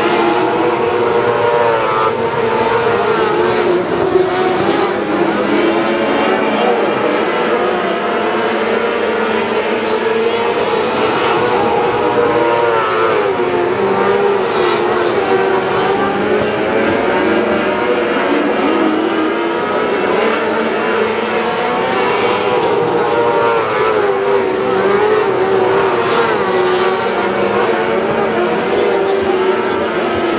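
Several Super 600 micro sprint cars' 600cc motorcycle engines running together as the pack laps a dirt oval. Their pitch wavers up and down continuously with the throttle.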